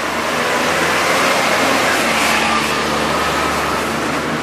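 Street traffic: a motor vehicle's engine passing close by, its noise swelling over the first second or two and then easing off.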